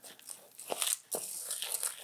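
Peanut-butter-coated pigeon grain being stirred in a bowl: a crunchy, scratchy rustle with a couple of sharp clicks.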